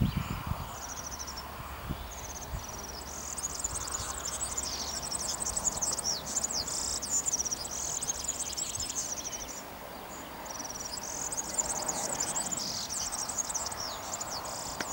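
Insects chirping in the meadow grass: rapid high-pitched trills repeated in short runs, one after another, with a brief lull about ten seconds in.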